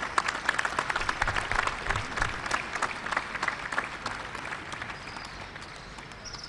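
Audience applauding, dense at first and thinning out and fading after about four seconds.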